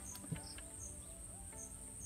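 Insects in the surrounding grass: a steady high-pitched buzz with a short chirp repeating about twice a second, faint but clear.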